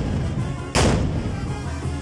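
A single loud shot from a carnival dancer's black-powder musket firing a blank charge, a bit under a second in. Band music plays underneath.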